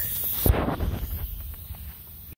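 Camera handling noise: a sharp thump about half a second in as the camera is grabbed, then fabric rustling and small knocks against the microphone that fade away.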